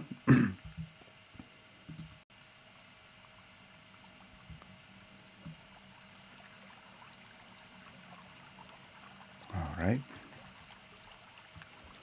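A man clears his throat once, then a faint, steady rushing of a flowing stream runs under a low steady hum. A single spoken word comes near the end.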